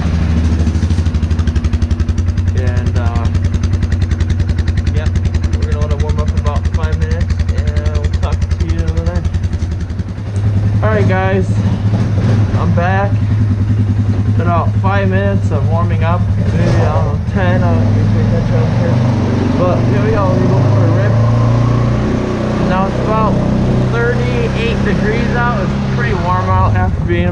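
Polaris Sportsman ATV engine idling right after a cold start, steady and loud. About ten seconds in its note rises slightly and gets louder, and it holds there.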